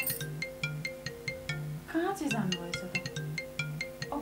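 Mobile phone ringtone playing a tinkling melody of quick, short notes over a pulsing low tone, with a brief voice sound about two seconds in.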